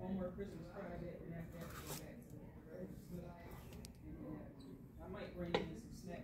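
Quiet, murmured voices in a small room, too faint for words to be made out, with one sharp click a little before the end.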